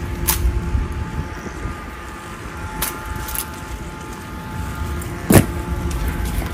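Ceremonial honor guards' drill: several sharp clacks over a steady low rumble, the loudest and deepest about five seconds in.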